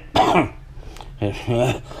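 A man coughing and clearing his throat: one harsh cough just after the start, then two short voiced throat-clearing sounds about midway.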